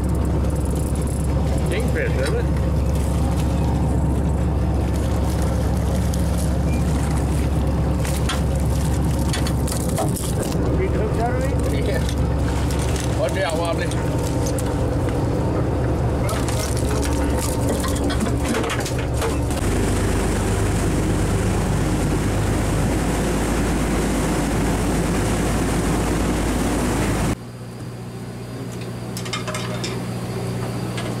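Boat engine running with a steady drone, with indistinct voices over it. About 27 s in, the sound drops abruptly to a quieter, lower hum.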